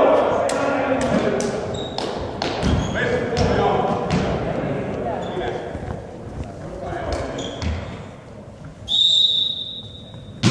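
Volleyball bouncing on a sports hall floor, with echoing impacts and players' voices, then a referee's whistle near the end: one steady blast of about a second, the signal to serve.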